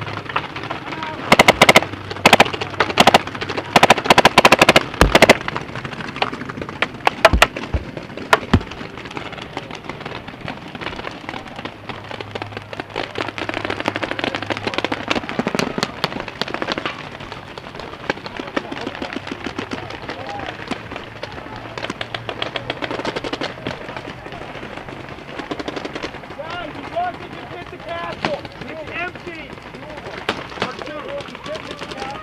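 Paintball markers firing. Rapid strings of loud, close shots come in the first nine seconds or so, then dense, fainter fire from many markers runs on through the rest.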